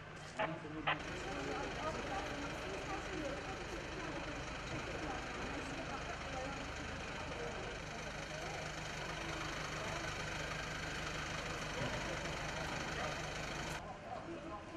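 A vehicle engine idling steadily, with faint voices in the background.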